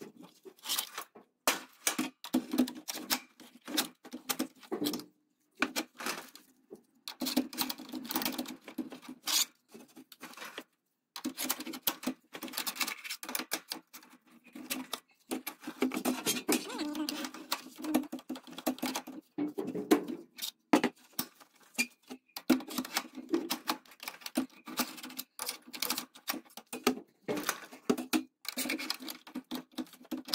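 Steel levers clicking and scraping against the metal spring pulley of a roller shutter as it is wound round to tension the new spring: a quick, irregular run of clicks and rattles broken by a few short pauses.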